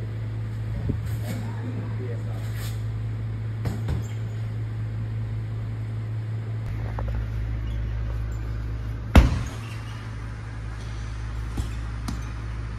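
Steady low hum of a gym, with a single loud thud about nine seconds in from a punch landing on a heavy punching bag, and a lighter knock near the end.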